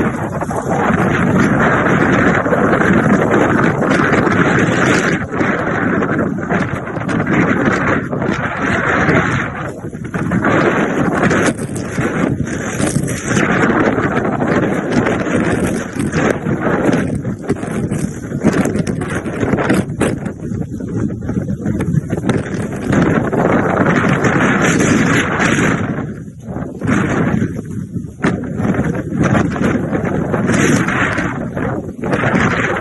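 Hurricane wind gusting hard across a phone's microphone: loud, unsteady wind noise that rises and eases with the gusts, dropping briefly in lulls near the middle and again near the end.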